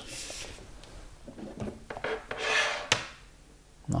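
Packaging being handled: a brief rubbing swish at the start, a louder rub of the box surface about two and a half seconds in, and a single sharp click just before three seconds.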